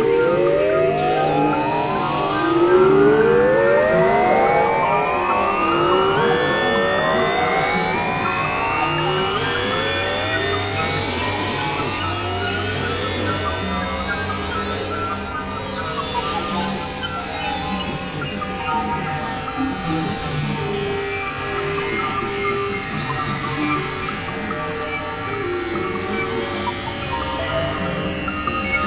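Experimental synthesizer music: about five overlapping slow upward pitch sweeps, each climbing for several seconds and thinning out by about halfway, over low steady drone tones. A high hiss cuts in and out in blocks throughout.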